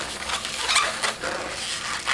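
An inflated 260 latex modelling balloon squeaking and rubbing as hands squeeze it and twist off a bubble.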